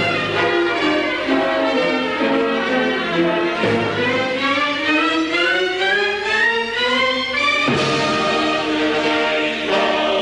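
Orchestra playing classical music with bowed strings prominent; about four seconds in the music climbs in a long rising run, breaking off near eight seconds into a full chord.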